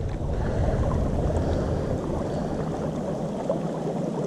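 Steady rush of a fast-flowing, rocky-bottomed creek's current.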